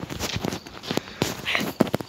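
Footsteps on a concrete patio mixed with phone handling noise: a string of soft, irregular taps and knocks, with a brief hiss about one and a half seconds in.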